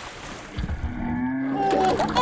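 A person's low, drawn-out groaning voice, going higher near the end, over thick slime sloshing in a pool.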